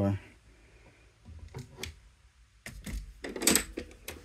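Metal locking gun mount being handled: a few sharp mechanical clicks about a second and a half in, then a louder cluster of clicks and clunks near the end.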